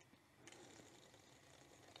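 Near silence: faint room tone with a soft hiss from about half a second in.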